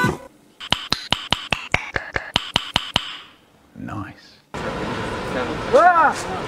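Improvised percussion: an object struck in a fast, even beat of about fourteen sharp knocks, roughly six a second, with a ringing note, lasting a little over two seconds and then stopping. Near the end a steady background noise comes in, with a voice.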